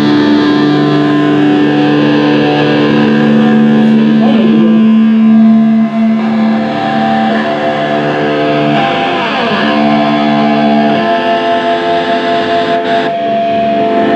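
Live thrash metal band: distorted electric guitars and bass hold sustained chords that change every few seconds. A chord slides down in pitch about nine seconds in.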